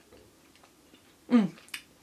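Faint small mouth clicks of chewing, then about a second and a half in a woman's short "mmh" of enjoyment, falling in pitch, as she eats a chocolate peanut butter cup.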